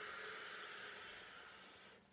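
A woman's long, steady breath out through pursed lips, a hiss that starts abruptly and fades away over about two seconds: the controlled Pilates exhalation that goes with rolling up from lying to sitting.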